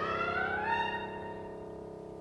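Contemporary chamber sextet of strings, piano and clarinet playing sustained tones, with a high line sliding upward in pitch over the first second, then holding steady as the sound slowly fades.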